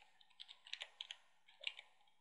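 Computer keyboard typing: a quick, irregular run of faint keystroke clicks as a web address is typed in.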